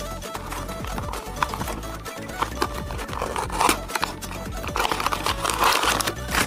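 Background music over the crinkling and clicking of a toy car's clear plastic packaging being handled and opened, louder in bursts about halfway through and near the end.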